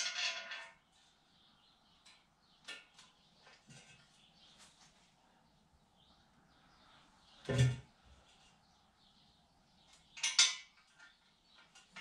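Scattered light metal clinks and taps as exhaust manifold bolts and a steel header are handled against a V8 engine's cylinder head, with a louder knock about seven and a half seconds in and another sharp clink near ten seconds.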